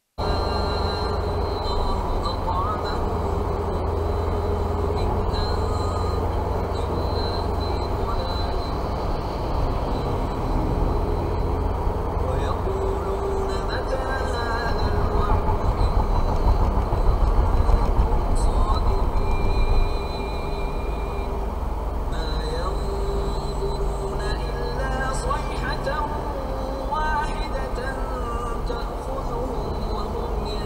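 Steady low road and engine rumble of a moving car heard from inside its cabin, growing louder for a few seconds in the middle, with faint voices underneath.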